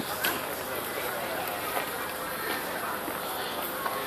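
Crowd chatter: many voices talking at once in the background, with a short knock about a quarter of a second in.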